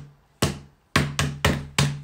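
Rapid repeated knocking, about three sharp strikes a second with a short low ring after each, with a brief pause early on.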